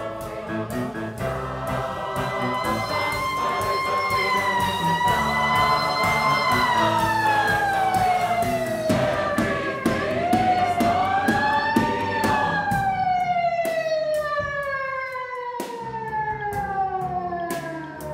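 A siren-like wail played within the concert music: one pitched tone holds and wavers, slides down, swoops back up about two-thirds of the way through, then glides slowly down again. Under it sit sustained low chords, which thin out in the second half, and scattered sharp ticks.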